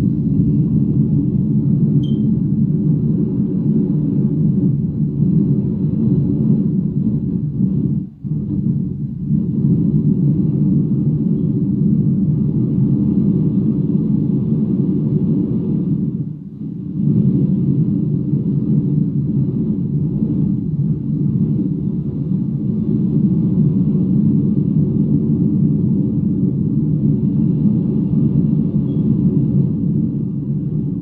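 Loud, steady low rumble of noise right on a phone's microphone, broken by two brief drops about eight and about sixteen seconds in.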